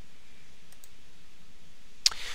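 Steady background hiss with two faint, quick clicks close together about three quarters of a second in.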